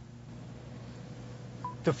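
Faint steady electrical hum, then a single short electronic beep about one and a half seconds in: the chime signalling that the phone on the Qi wireless charging pad has begun to charge.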